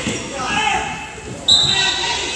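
A referee's whistle blows one short, steady, shrill note about one and a half seconds in. Before it there are voices in the gym and low thuds of a basketball bouncing on the hardwood floor.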